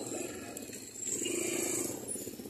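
Small motorcycle engine of a passing tricycle (motorcycle with sidecar) running, growing louder and steadier about halfway through.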